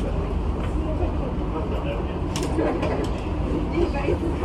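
Steady low hum inside a Dubai Metro train car standing at a station platform, with indistinct voices and a few short clicks about two and a half seconds in.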